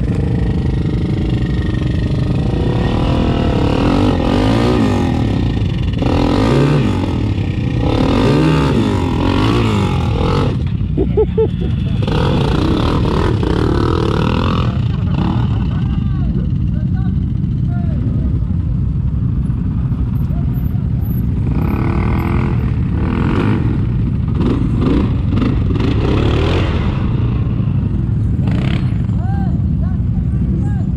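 ATV engines running: a steady low idle throughout, with engines revving up and down several times in the first ten seconds and again in the last third.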